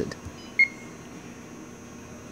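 One short, high electronic beep about half a second in from the APLIC 5000 press brake control's touchscreen as the punch field is touched, opening its list of punches, over a steady faint hum.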